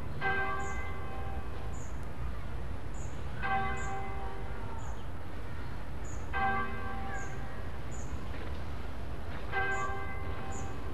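A single church bell tolling slowly, one stroke about every three seconds, four strokes in all, each ringing on and fading away.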